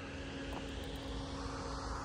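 Steady, faint mechanical drone with a constant low hum and no distinct event.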